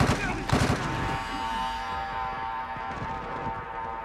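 TV drama soundtrack: a few sharp gunshot-like bangs in the first second, then a sustained musical score chord held for the rest.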